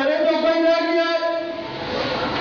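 A man's voice holding one long, steady chanted note, in the drawn-out melodic style of religious recitation.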